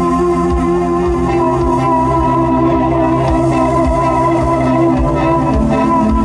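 Live rock band music: held synthesizer chords with electric guitar, one tone wavering in the middle of the passage, over soft low thumps.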